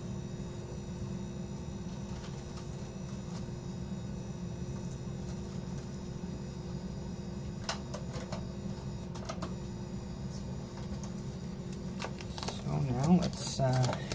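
A steady low hum runs throughout, with a few light clicks about eight and nine seconds in. A man's voice starts near the end.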